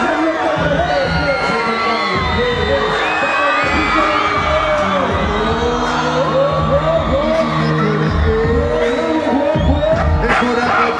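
Live hip hop music played loud through a concert sound system, with a heavy bass beat and the voices of a large crowd mixed in.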